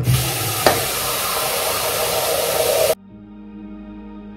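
Bathroom sink tap running: a steady rushing hiss with a single click shortly after it starts. It cuts off abruptly, and soft background music with sustained tones follows.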